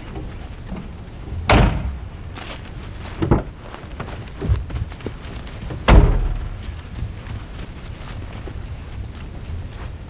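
A small 4x4's door being shut: two heavy slams, one about one and a half seconds in and a louder one about six seconds in, with a few lighter knocks between them.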